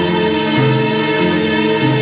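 Live band music: an electric bass guitar plays under sustained keyboard chords, with the bass note changing about every second.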